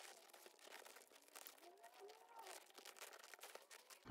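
Near silence, with faint crackling and a few soft squeaks from very sticky double-sided mounting tape being unrolled and pressed down by hand along a canvas edge.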